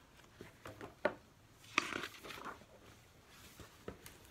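An open hardcover picture book being handled and turned upright: a few short rustles and soft knocks from its pages and cover, the sharpest about a second in and just before two seconds.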